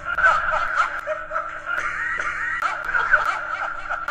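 Snickering, chuckling laughter over background music.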